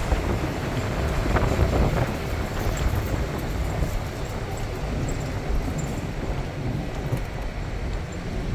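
Steady road and engine noise of a moving vehicle at driving speed, with wind buffeting the microphone in a low, fluttering rumble.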